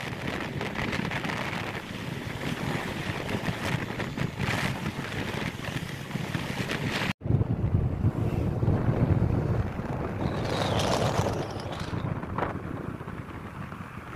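Wind rushing over the microphone on a moving motorcycle, with engine and road noise underneath. The sound drops out for a split second just past the middle, then a heavier low rumble follows as a lorry goes by.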